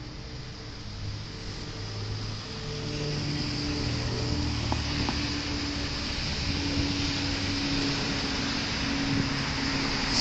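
Street traffic passing close by, with engines humming steadily and growing louder over the first few seconds as an ambulance and then a box truck drive past, no siren sounding.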